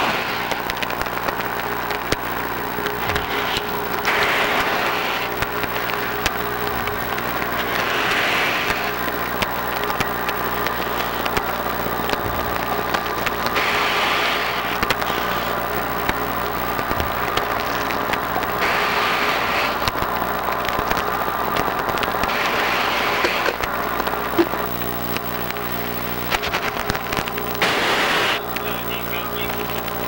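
A steady machine hum heard through a diver communication system, with a diver's breath rushing out in a noisy burst about every four to five seconds.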